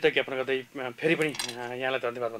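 A man's voice in a studio, its words not made out.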